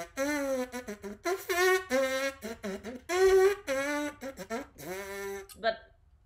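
Lips buzzing trumpet-style without an instrument, playing a short tune of about eight brassy notes at changing pitches, several sliding down at their ends.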